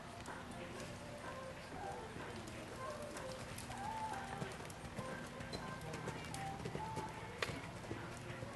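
Hoofbeats of a cantering horse on sand arena footing, heard faintly under distant voices and background music, with one sharp knock near the end.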